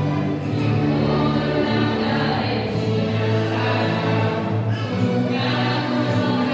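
A choir singing with long held notes that change every second or two.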